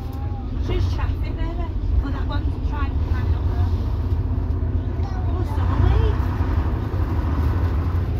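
Leyland Leopard PSU3/3R coach's diesel engine running, a steady low rumble heard from inside the saloon.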